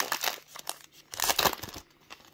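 Foil trading-card pack wrapper crinkling as it is spread open and the cards are drawn out, in short irregular rustles, the loudest a little past the middle.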